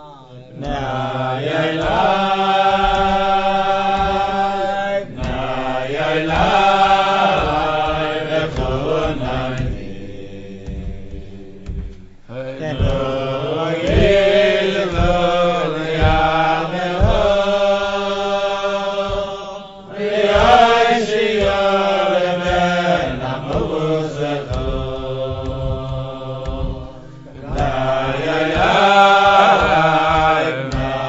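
Voices singing a slow melody in long held phrases, with short breaks between phrases every several seconds.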